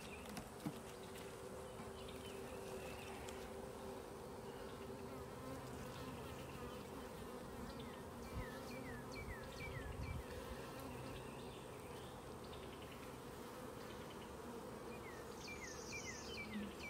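Honeybees buzzing steadily around an opened nuc hive while its frames are lifted out, a continuous low hum.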